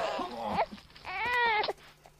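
High-pitched wordless human cries: a short one at the start, then a longer wailing cry about a second in that rises and falls in pitch.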